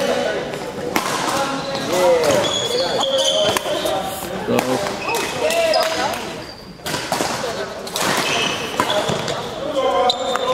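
Badminton singles rally on a sports-hall court: rackets hitting the shuttlecock, and indoor court shoes squeaking and thudding on the floor as the players move.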